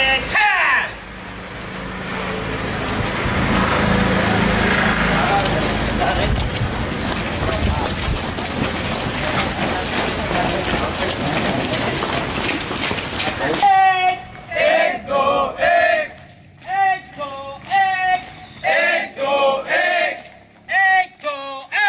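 A squad of cadets running on wet pavement: a dense, loud mass of footfalls and voices that swells over the first few seconds. About fourteen seconds in it gives way to a group of men chanting in short rhythmic phrases about a second apart, a marching chant.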